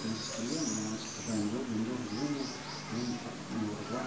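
Small birds chirping: repeated short, high chirps, faint against a low background of other low calls or voices.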